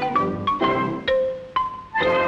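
Xylophone playing a run of single struck notes, about three a second, each ringing on briefly.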